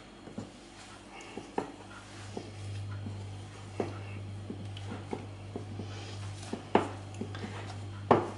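Hands kneading crumbly cocoa shortcrust dough in a glass bowl, with scattered light taps against the glass. A low steady hum comes in about two seconds in.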